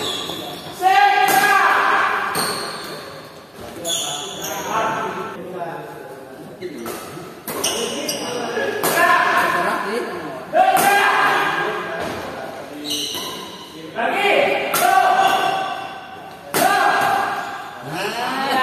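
Badminton rally: racket strings hit the shuttlecock a dozen or so times, sharp cracks with hall echo every second or two. Many hits come with short shouts from the players.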